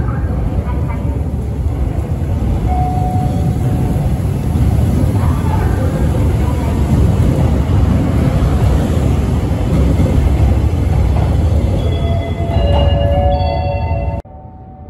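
A commuter electric train running past at close range, with a loud, steady rumble of wheels and running gear. Near the end, several steady whining tones from the traction motors come in over the rumble.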